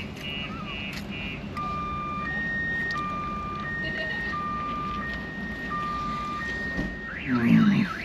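A car alarm sounding and cycling through its tones: a rapid beeping at the start, then a slow high-low two-tone alternation, then a fast up-and-down warble near the end.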